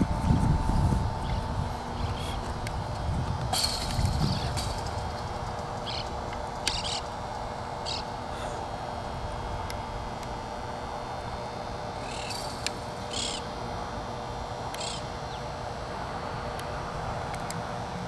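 Outdoor ambience: scattered short bird chirps over a steady low hum, with low rumbles on the microphone in the first second and again around four seconds in.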